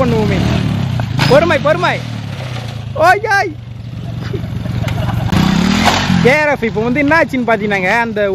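Motorcycle engine revving and dropping back during a wheelie, its pitch falling at first and climbing again about five seconds in. Men's voices shout over it at times.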